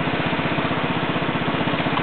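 A small petrol engine, typical of a Field Day generator, running steadily with an even, rapid throb.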